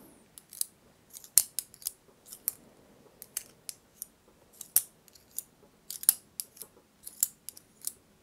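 Small, sharp, irregular clicks and snips from objects being handled on a desk, about two or three a second.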